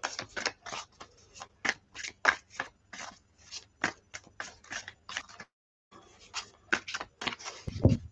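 A Gilded Tarot Royale deck being shuffled by hand: quick, irregular papery slides and flicks of the cards, several a second, with a brief pause about two thirds of the way through.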